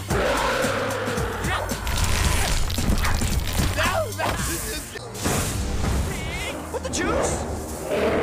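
Animated fight-scene soundtrack: action music with a steady low bass under repeated crashing and impact sound effects, with short vocal cries and creature-like sounds mixed in.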